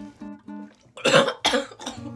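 A woman coughs in a short fit about a second in, in shock at what she has just heard, over soft acoustic guitar background music.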